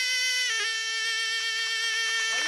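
Tunisian zokra, a double-reed shawm with a flared metal bell, holding one long steady note that steps slightly lower about half a second in.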